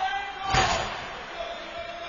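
A single hard bang about half a second in, echoing briefly around the ice arena: a hit against the rink boards during play.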